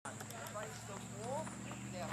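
Children's voices calling and chattering across a field hockey practice, with a few sharp clicks of hockey sticks tapping balls, over a steady low hum.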